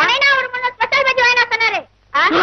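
A high-pitched voice in two long, drawn-out utterances, each about a second long, the pitch sliding down.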